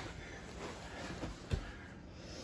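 Bodies and clothing shifting and rubbing on vinyl-covered foam mats during grappling, with a soft thump about one and a half seconds in.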